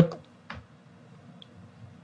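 A pause in a man's speech: the end of a word, then quiet room tone with a faint steady hum and a single soft click about half a second in.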